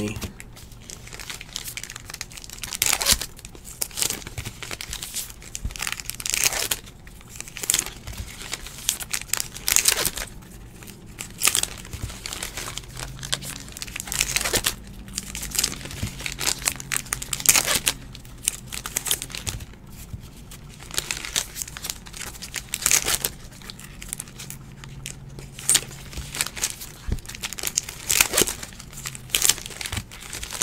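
Trading-card pack wrappers being torn open and crinkled by hand, one pack after another: a continuous run of irregular crackling rips and rustles.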